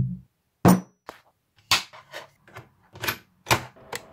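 A Korg monologue analogue synthesizer note cuts off just after the start. It is followed by a series of about eight sharp mechanical clicks and clunks. The last of them, just before the end, is the PLAY key of a TRC-960C cassette recorder being pressed down.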